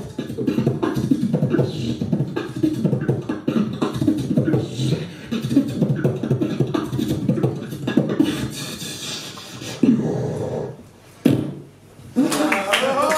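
Solo freestyle beatboxing: a fast run of mouth-made bass and drum sounds with quick clicks. It thins out about ten and a half seconds in, and one last hit closes it just before the end.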